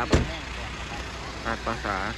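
Concrete mixer truck's diesel engine idling, a low steady rumble, with one sharp knock just after the start.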